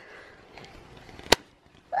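A single sharp click about a second and a third in, over faint rustling.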